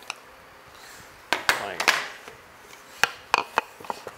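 Pieces of wood knocking together as they are handled: a few sharp wooden clacks in two short clusters, one in the first half and one in the second.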